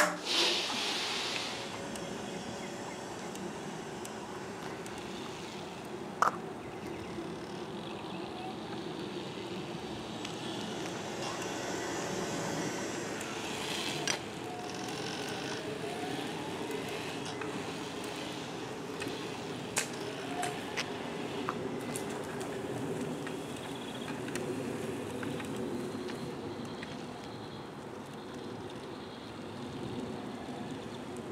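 Electric power wheelchair driving across concrete, its drive motors running with a steady low whir under outdoor background noise, with a few sharp clicks.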